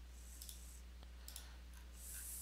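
A few faint computer mouse clicks, spaced apart, as items are selected one by one on screen, over a low steady electrical hum.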